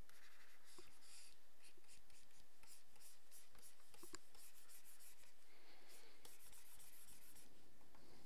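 Faint scratching of a stylus nib rubbing across a graphics tablet in quick, irregular strokes as lines are erased.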